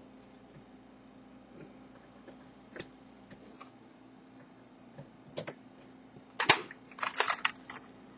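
Handling noise from an aluminium-cased Kia vaporizer and its power cord: a few isolated light clicks, then a cluster of sharper knocks and clicks from about six to seven and a half seconds in as the metal box is moved. A faint steady low hum runs underneath.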